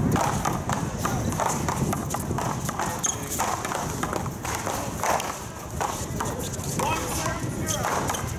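A paddleball serve and rally: the hard rubber Big Blue ball is smacked by paddles and rebounds off the concrete wall in a quick, irregular string of sharp knocks.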